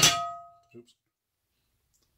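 A single clang of a Levco cast iron skillet knocking against the stove as it is lifted and turned over, its metallic ring dying away within about half a second.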